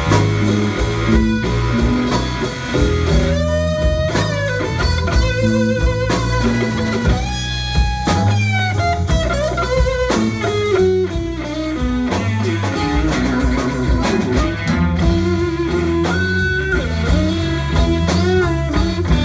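Live blues band in an instrumental break: an electric guitar plays a lead with bent, wavering notes over bass guitar and a drum kit.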